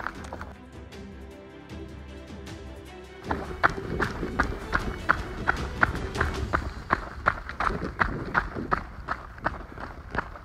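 Running footsteps on a dirt trail, about three strides a second, starting a few seconds in, with music underneath.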